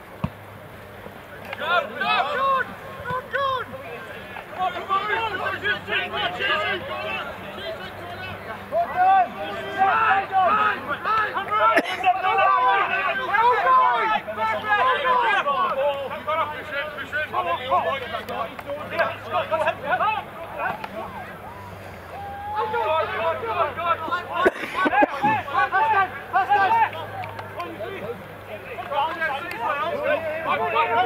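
Indistinct shouting and calls from rugby players on the pitch, mixed with spectators talking on the touchline, coming in bursts.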